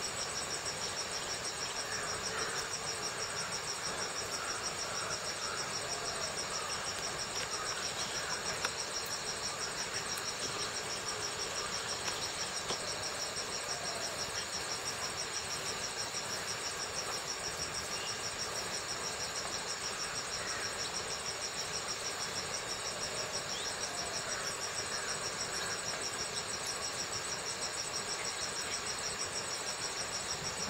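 Steady chorus of trilling insects: two high-pitched, rapidly pulsing tones that run on without a break.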